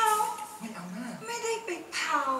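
Stylised theatrical Thai stage dialogue: an actress's voice in an exaggerated, drawn-out delivery, swinging from high pitch down low in the middle and back up.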